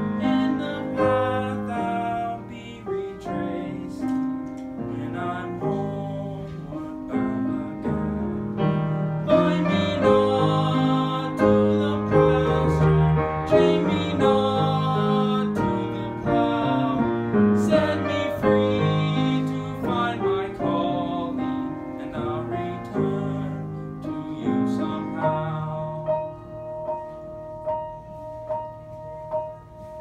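Piano playing an instrumental interlude of a song accompaniment, a steady flow of struck notes and sustained chords.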